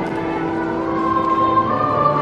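Church music during a Mass: several long held notes sounding together as chords, moving to new notes near the end.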